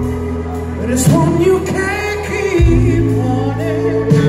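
A live rock band playing electric guitars, bass and drums, with a wavering sung line over it in the middle.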